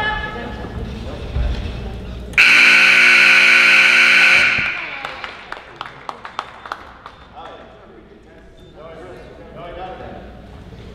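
Gymnasium scoreboard buzzer sounding one steady tone for about two seconds, starting about two and a half seconds in, marking the end of a wrestling period. Crowd voices come before it, and scattered sharp claps follow.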